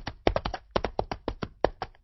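A fast, uneven run of sharp taps or knocks, about seven a second, used as a sound effect.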